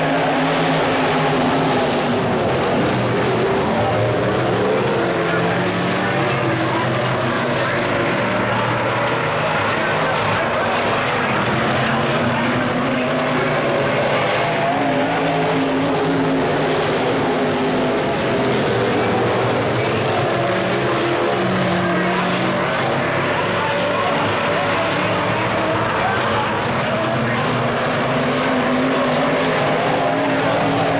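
A pack of IMCA Modified dirt-track race cars running at race speed, their V8 engines making a steady, loud mix of engine notes that waver in pitch as the cars work through the turns.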